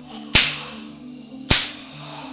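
Two sharp cracks about a second apart, each trailing off in a fading hiss, from Sanchin kata training in a karate dojo.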